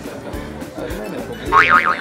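Background music with a cartoon 'boing' sound effect about one and a half seconds in: a short springy tone that wobbles up and down several times.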